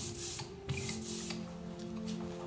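A hand ink roller rolled back and forth over an inked printing surface, a rough rubbing sound in a couple of strokes, over soft held music.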